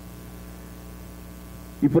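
Steady low electrical mains hum, with a man's voice starting to speak near the end.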